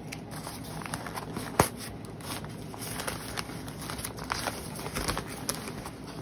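Newspaper and plastic packing crinkling and rustling as plants are unwrapped from a shipping box, with scattered small crackles and one sharper crack about a second and a half in.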